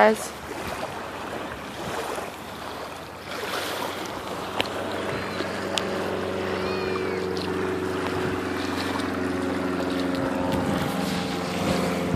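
Motorboat engine running steadily out on the water. It comes in about four seconds in and grows louder toward the end, over wind and small waves washing onto the sand.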